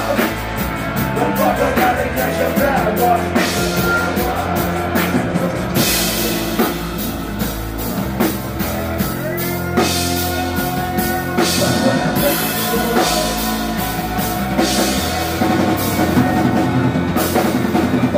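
Live rock band playing loud: a drum kit beating hard with many cymbal and drum hits, over bass guitar and keyboards.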